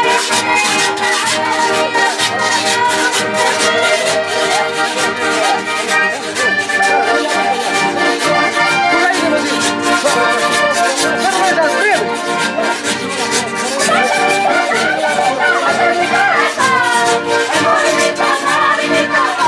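Live Andean festive dance music from a village band: a repeating melody on instruments over a steady, driving beat, with voices in the crowd.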